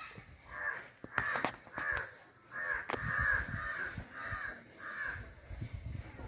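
Crows cawing, a run of about ten short calls roughly two a second that starts about half a second in and stops near the end.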